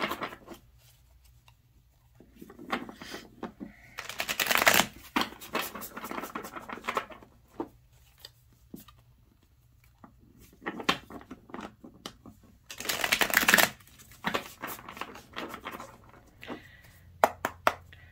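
A tarot deck shuffled by hand: several short bursts of rapid card clicks and riffles, with quiet pauses between them.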